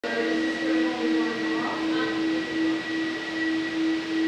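A steady low hum with a thin, high steady whine above it, swelling and dipping slightly in loudness.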